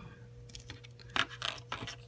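Small plastic parts of a Figma action figure scratching and clicking under the fingers as the face plate is worked off the head. There are a few short scrapes in the second half.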